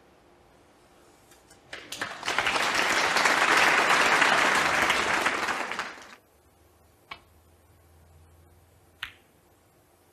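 Arena audience applauding: the clapping swells in quickly, holds for about four seconds and stops suddenly. Two single sharp clicks follow a few seconds later.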